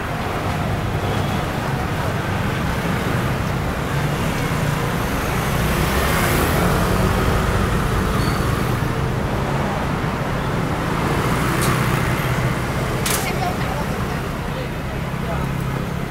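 Busy city street: steady traffic of cars and scooters running by, swelling as vehicles pass about six to eight seconds in and again near twelve seconds, under the chatter of people on a crowded sidewalk. A single sharp click comes about thirteen seconds in.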